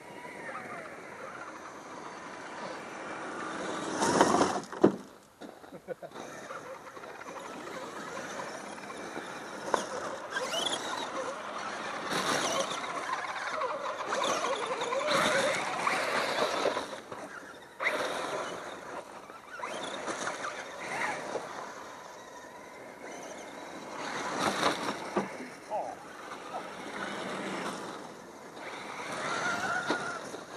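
Radio-controlled scale trucks driving over coarse gravel, with people talking in the background; a loud burst about four seconds in.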